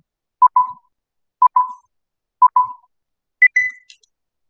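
Countdown beeps in the style of a film leader: short electronic tones, one a second, four at one pitch and then a final beep about an octave higher.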